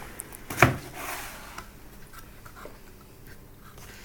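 Cardboard box lid being opened by hand: one sharp snap about half a second in as the tuck flap comes free, then a short rustle of cardboard sliding open.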